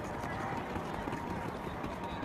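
Sprinters' footsteps on a synthetic running track, with faint voices over steady open-air noise.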